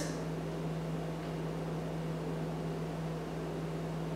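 A steady low electrical hum with a faint even hiss underneath, unchanging throughout: background room tone with no distinct event.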